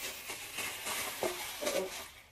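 Thin plastic shopping bag crinkling and rustling as items are handled and pulled out of it.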